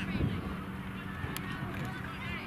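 Distant, indistinct high-pitched shouts of players on an outdoor soccer pitch over steady field noise, with a low thump shortly after the start.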